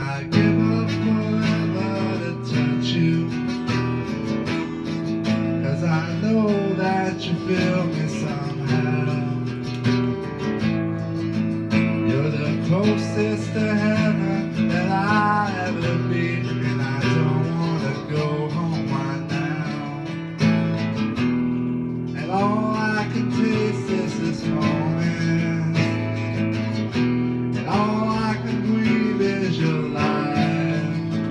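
Acoustic guitar strummed in steady chords through a song.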